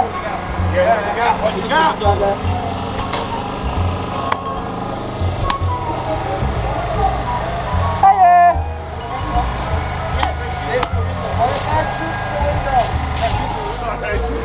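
Background voices and scattered sharp clicks over a low, pulsing drone, with one loud rattling burst about eight seconds in.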